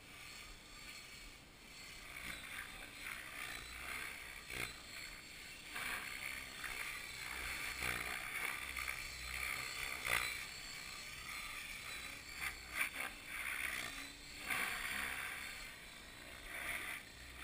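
Radio-controlled model helicopter in flight, its motor and rotor sound faint and rising and falling as it manoeuvres. A few sharp clicks come about two-thirds of the way through.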